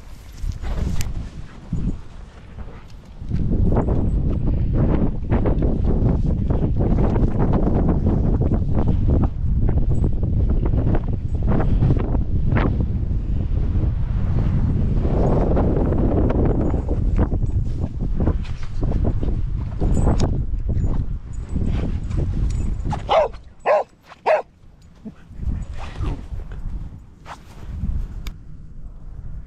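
Wind rumbling on a body-worn action camera's microphone over the walker's footsteps for most of the stretch, then a dog gives three or four short barks about three-quarters of the way through.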